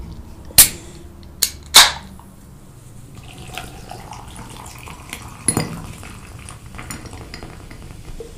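A few sharp clicks, then carbonated grape juice drink poured from a can into a glass mug, splashing and fizzing, with one louder knock midway.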